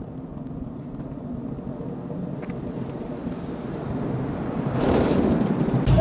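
Steady rushing noise heard from inside a car cabin, growing louder over the last second and a half.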